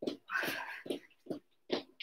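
A woman breathing hard with one long exhalation about half a second in, as she recovers just after an intense interval, with a few soft thuds from her feet as she steps in place.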